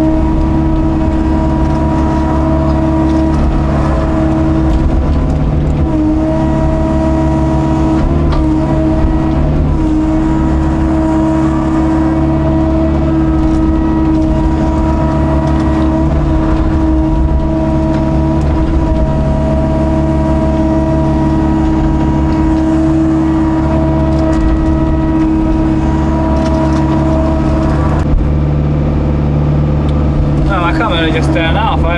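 Excavator's diesel engine running steadily with its hydraulics working as the bucket digs and lifts pond mud, heard from inside the cab. The engine note dips briefly a few times as the load comes on.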